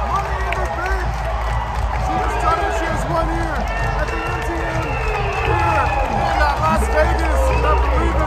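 Arena crowd shouting and cheering over loud music from the PA with a heavy, steady bass.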